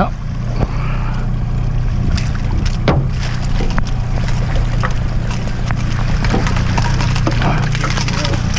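Yamaha outboard motor running steadily at low speed, with water churning around the boat. A few sharp knocks, the loudest about three seconds in, come as a landing net is swung into the water.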